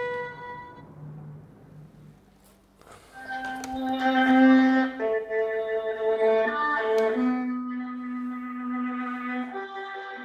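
A long bowed violin note is held and fades out within the first second. After about two seconds of near quiet, a slow bowed-string melody of long held notes begins.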